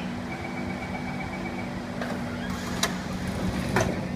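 Doors of a Kawasaki C151 metro train closing at a station stop: a high warning tone sounds for about a second and a half, then two sharp thuds about a second apart as the doors slide shut, over the train's steady electrical hum.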